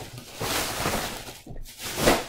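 Thin plastic shopping bags rustling and crinkling as they are handled, with a brief lull about one and a half seconds in.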